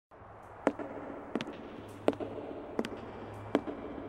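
Sound-design clicks for a logo intro: five sharp, evenly spaced clicks, about one every 0.7 seconds, each with a short ring, over a faint low hum.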